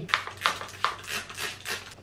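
Paper scissors snipping through damp hair: a quick, uneven run of sharp metal-blade snips, about eight to ten in two seconds.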